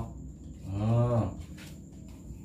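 A man's low, drawn-out hum or groan lasting under a second, without words, followed near the end by a faint click of cards being handled.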